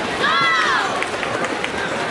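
A spectator's high-pitched shout of encouragement to the swimmers, rising and falling once about a quarter second in, over a steady din of crowd noise.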